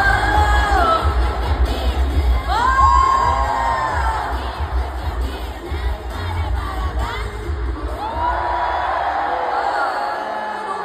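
Large stadium crowd cheering, with high voices swelling and falling in waves, over loud live pop concert music with a pulsing bass beat. The bass fades out near the end while the cheering goes on.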